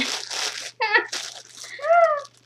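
Crinkling and rustling of plastic packaging as an item is pulled out and handled, with two short wordless vocal sounds: one about a second in and one rising and falling near the end.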